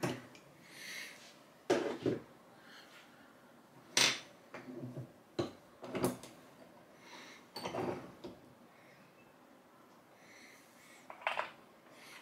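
Lee Classic turret press being turned by hand and its lever worked: irregular clicks and clunks of the turret and ram, the sharpest about four seconds in. The press's auto-indexing has slipped out of time and is being reset.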